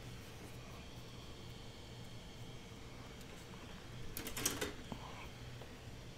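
Quiet handling at a craft table: a cloth rubbing faintly over a small notebook's paper cover, then a brief cluster of clicks and rustles about four seconds in, over a low steady hum.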